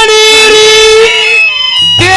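Male Haryanvi ragni singer holding one long, high sung note through a stage PA. The note breaks off about a second and a half in.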